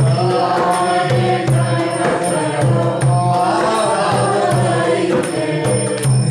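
Vaishnava devotional chant (kirtan): a male voice singing long, bending melodic phrases over a steady rhythm of hand percussion.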